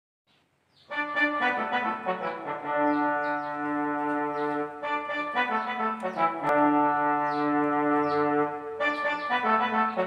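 Yamaha PSR electronic keyboard playing sustained chords in a brass-like voice, starting about a second in after a moment of silence. New chords are struck at intervals of about four seconds, with quicker notes between them.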